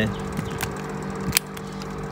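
A steady low machine hum holding several fixed pitches, broken by two sharp clicks: a light one about half a second in and a louder one near the middle.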